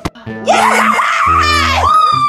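A dog howling loudly in a high, wavering cry that starts about half a second in, over background music.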